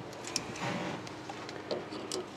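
Digital calipers being handled and opened onto turned aluminium stock: a few light clicks and soft sliding and rubbing. Underneath runs a faint steady hum.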